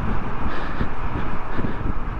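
Steady wind rush buffeting the microphone on a moving Honda GoldWing GL1500 motorcycle, with its engine and road noise underneath.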